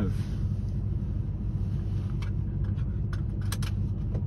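A vehicle engine running steadily with a low, even hum, and a few short clicks in the second half.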